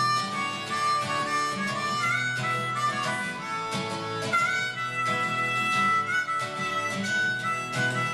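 Harmonica solo over a strummed acoustic guitar, the harmonica playing long held notes, some sliding up into pitch, over a steady strum.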